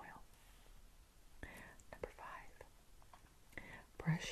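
Near silence, with a woman's faint whispering and breaths in a few brief snatches.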